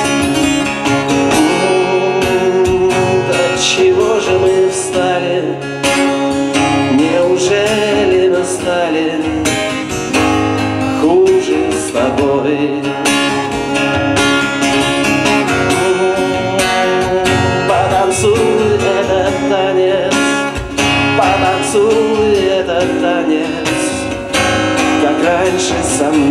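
Acoustic guitar strummed and picked through an instrumental passage of a bard song, between sung verses.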